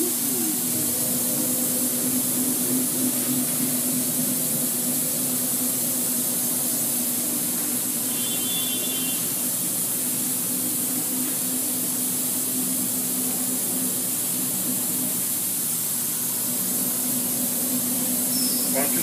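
Northwood Model 58E CNC router running steadily: a constant low hum under an even hiss, with no change for the whole stretch.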